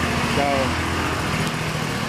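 A small engine running steadily, a low even hum under dense street noise, with a man's voice saying one word about half a second in.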